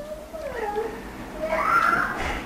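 A cat meowing in the room: a long meow that slides down in pitch, then a higher rising meow near the end.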